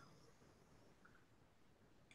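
Near silence: faint hiss of a video-call audio line during a pause in speech.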